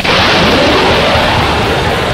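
Fighter jet making a low pass overhead: a loud jet roar that cuts in suddenly and holds.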